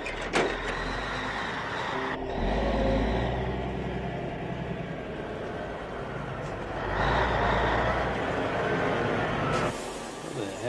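Film soundtrack of a semi-truck's diesel engine running as the big rig manoeuvres, with a sharp knock at the start. The deep engine rumble swells twice, a couple of seconds in and again about seven seconds in.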